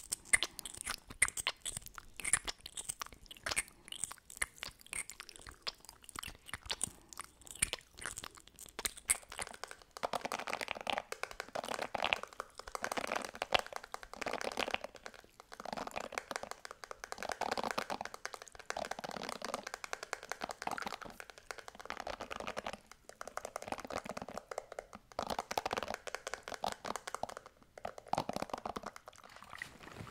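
Sharp, sticky lip-gloss and mouth clicks close to the microphone for about the first ten seconds. Then hairbrush bristles stroked over the microphone's mesh grille in repeated scratchy runs of a second or two with short pauses.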